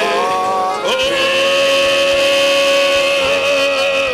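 Church worship music with singing. The pitch changes just before a second in, then one long note is held.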